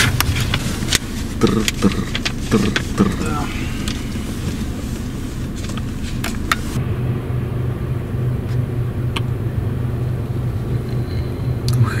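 Steady low rumble of an idling car heard from inside the cabin, with sharp clicks and rustles of paper being handled in the first few seconds.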